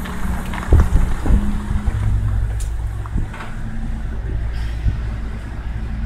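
Low, steady rumble of a car's engine and tyres as it moves slowly.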